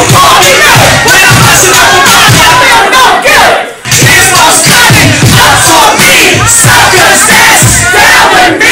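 A packed crowd shouting along over loud live hip hop music, the sound very loud throughout. There is a brief dip in the sound just under four seconds in.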